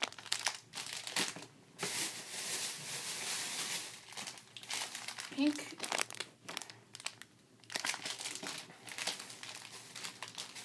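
Crinkling of a plastic retail bag of Rainbow Loom rubber bands being handled and turned over close to the microphone, in irregular rustling spells.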